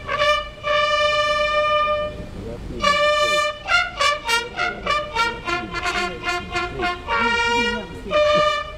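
Military brass band playing, trumpets to the fore, a slow melody with two long held notes, one about a second in and one about three seconds in, between shorter phrases.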